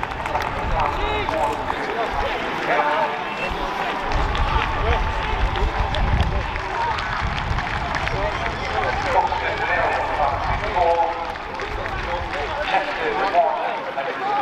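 Indistinct chatter of several voices around a football pitch, with a low rumble from about four to seven seconds in.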